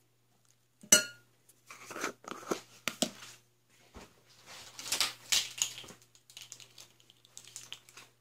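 Metal fork clinking against a glass bowl and working through ground chicken with minced garlic and brown sugar. A sharp clink about a second in, then irregular scraping and clicking strokes that thin out near the end.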